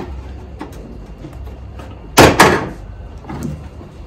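Two sharp snaps about a quarter second apart, a little past two seconds in: plastic retaining pins of a trunk spoiler popping loose from the trunk lid as they are pried out with a plastic trim tool. Faint small clicks of the tool on the clips come before them.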